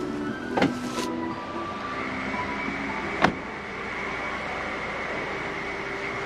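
Handling noise, then a single sharp click about three seconds in, against a steady high-pitched tone that sets in about two seconds in.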